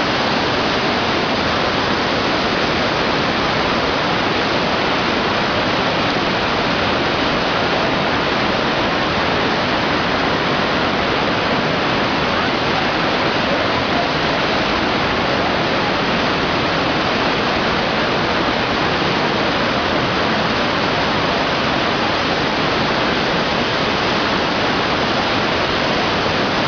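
Swollen, muddy river in flood rushing past close by, a loud, steady noise of fast water with no let-up.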